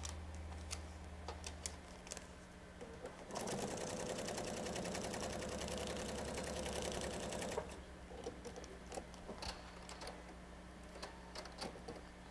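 Pfaff electric sewing machine stitching a seam through fabric on a paper foundation. It runs steadily for about four seconds, starting about three seconds in, then stops. Scattered light clicks come before and after.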